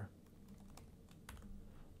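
Faint typing on a computer keyboard: several soft, separate keystroke clicks.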